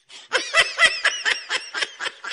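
A person laughing: a quick run of snickering bursts, about five or six a second, breaking in about a third of a second in.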